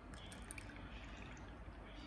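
Water faintly pouring and dripping as it is tipped out of a plastic cup into a plastic tray, with a few light clicks near the start.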